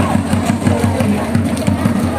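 Dance music driven by rapid, steady drum beats, accompanying a war dance.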